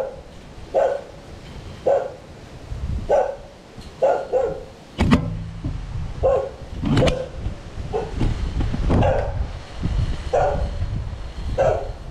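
A dog barking repeatedly, short barks about once a second. A sharp thump about five seconds in is the loudest sound, with a second one near seven seconds.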